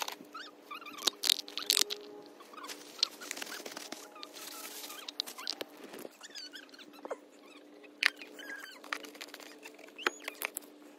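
Gloved hands handling the oily plastic oil-filter housing cap and fitting it back onto the filter housing: short clicks, scrapes and small squeaks of glove and plastic rubbing, over a faint steady hum.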